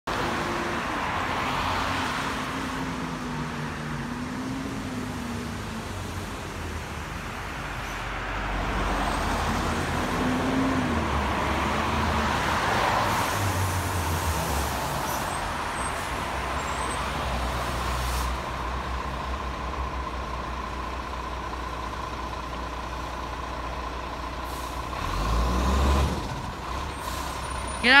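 Diesel engine of an Iveco garbage truck running as it approaches and drives by, with air-brake hiss. A loud horn blast sounds right at the end.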